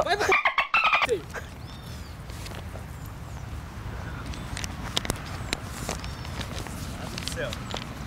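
A voice for about the first second, then steady outdoor background with a few short chirping bird calls and scattered faint clicks.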